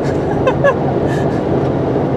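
Steady road and engine noise inside a car cruising on the interstate, with a short laugh about half a second in.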